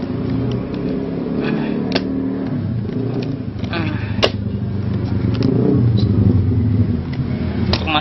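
A small metal blade prying at the nailed lid of a wooden bee box, giving several sharp clicks and knocks, the strongest about four seconds in. A motor vehicle engine runs close by with a steady low hum throughout.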